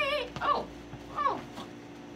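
Maltipoo whining in short high-pitched yips, three in quick succession, the second and third falling in pitch.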